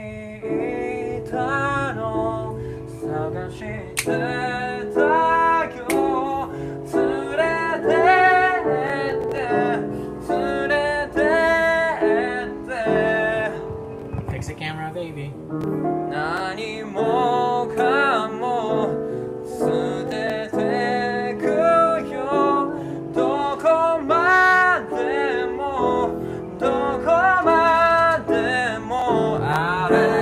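A man singing a slow Japanese pop ballad, accompanying himself on an upright piano.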